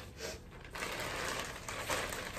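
Plastic mailer bags rustling and crinkling as they are handled.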